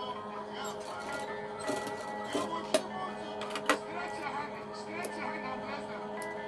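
Faint background music or television sound with a steady held tone and a faint voice-like murmur, broken by a few isolated sharp clicks.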